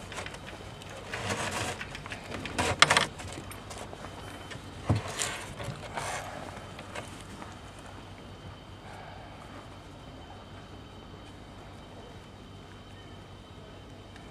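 Straps being threaded by hand through an ATV's plastic rack: rustling and scraping, a sharp click near three seconds and a knock about five seconds in. After that only faint steady background noise.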